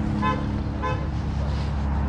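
Two short car-horn chirps about half a second apart, over a steady low rumble.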